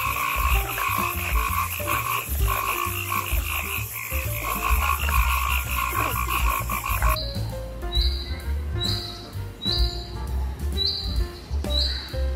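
Frogs calling: a rapid pulsed croaking trill for about the first seven seconds, then a different call of short high chirps repeated roughly once a second.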